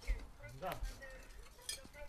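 A few light clinks and knocks of broken brick and metal being handled by hand, with a brief murmur of a voice.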